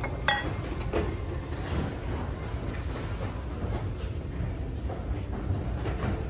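Glassware clinking once, sharply, about a third of a second in as it is handled among dishes in a cardboard box, with a short ringing tail. A few faint knocks of dishes follow over a steady low background hum.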